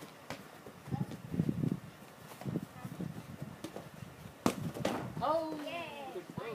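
Indistinct voices with a few short knocks, the loudest a sharp knock about four and a half seconds in, followed by a higher voice calling out with a rising and falling pitch.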